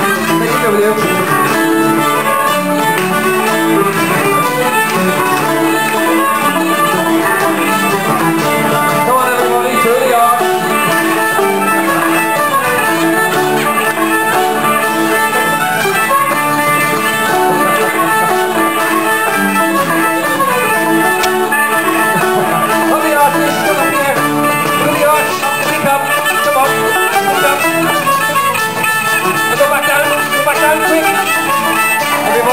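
Live ceilidh band playing a folk dance tune on two fiddles, banjo and guitars, at a steady pace without a break.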